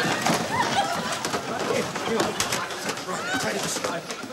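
Studio audience laughing over a commotion, with cardboard shoe boxes knocking and clattering as they are pulled off shelves.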